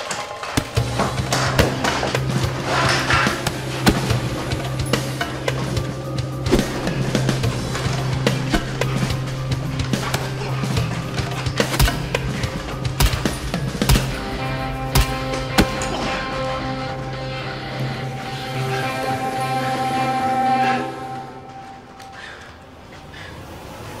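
Tense soundtrack music over a steady low drone, cut through by many sharp hits and thuds of a hand-to-hand fistfight. The music drops away shortly before the end.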